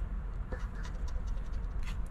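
A coin scratching the coating off a scratch-off lottery ticket in a run of short, quick strokes.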